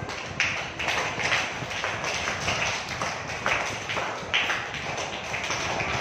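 Irregular soft tapping, a few taps a second.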